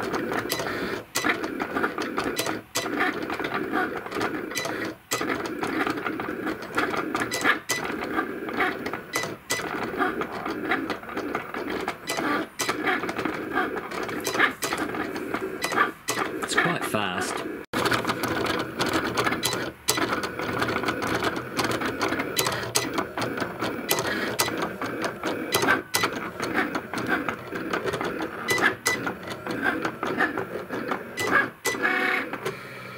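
Cricut electronic cutting machine cutting stencil vinyl: its motors whirr as the tool carriage and mat move in quick short runs, stopping and starting many times with small clicks.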